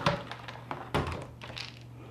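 Two light knocks about a second apart as plastic kitchenware, a colander and a food-dehydrator tray, is handled on a countertop.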